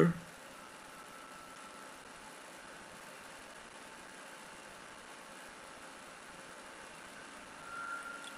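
Steady, faint background hiss of an indoor swimming pool hall, with a thin faint tone about a second in and again near the end.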